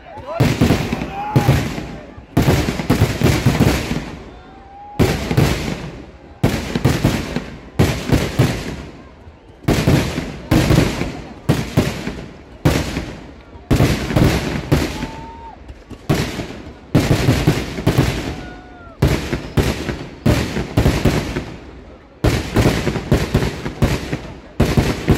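Kerala temple fireworks (vedikettu) going off in a rapid, continuous barrage of loud explosions, about two blasts a second and sometimes several in quick succession, each trailing off before the next.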